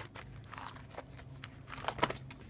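Light, scattered clicks and crinkles of plastic photocard sleeves and cards being handled in a photocard binder.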